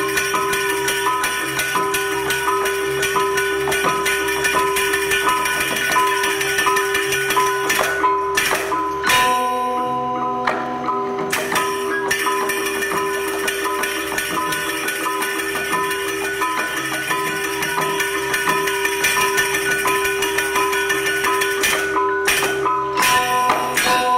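Balinese gamelan playing dance music. Bronze metallophones ring a quick repeating figure over a held tone, with sharp accents about eight to ten seconds in and again near the end, where the figure changes.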